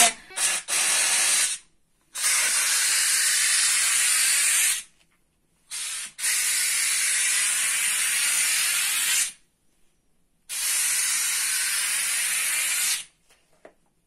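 Handheld steam cleaner jetting steam onto curtain fabric to steam-iron it smooth, heard as bursts of hiss. There are a few short spurts at first, then three long blasts of about three seconds each with short pauses between them.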